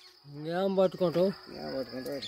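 A man's voice calling out in drawn-out sounds, twice, over a steady high-pitched insect trill that runs throughout.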